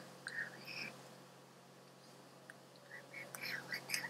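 Faint whispery, breathy vocal sounds from a person in short bursts, a few in the first second and a cluster near the end, over a steady low hum.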